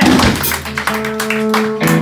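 Live rock band of electric guitar, bass and drums playing loud: a held, ringing guitar note over short drum hits, shifting to new pitches near the end.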